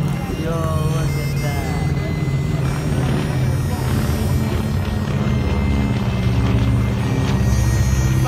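Twin-engine propeller airplane flying overhead: a steady low engine drone that grows a little louder in the second half.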